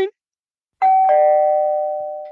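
Two-note ding-dong chime: a higher note about a second in, then a lower one a moment later, both ringing on and slowly fading.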